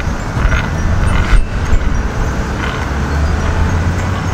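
Strong wind buffeting the microphone outdoors: a loud, steady low rumble.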